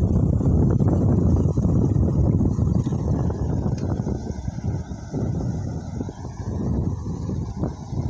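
Wind buffeting the microphone: a loud, gusting low rumble that eases somewhat in the second half.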